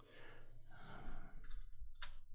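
A soft, faint breath out close to the microphone.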